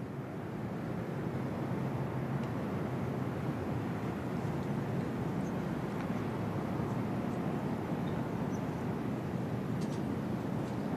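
Steady, even outdoor background noise of a hushed golf gallery, with no distinct events.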